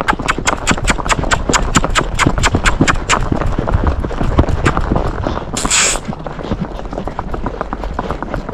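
Hoofbeats of a pinto paso horse on asphalt, quick and evenly spaced at about six a second in its four-beat paso gait. About two seconds before the end there is a short hiss.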